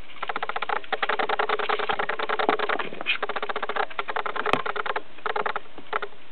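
Crickets chirping: a fast pulsing trill in bursts of about a second, with short breaks between bursts. There is a single sharp click about midway.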